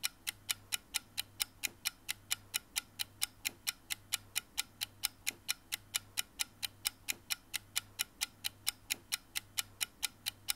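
Steady, rapid ticking like a clock, about four even ticks a second, over a faint low hum.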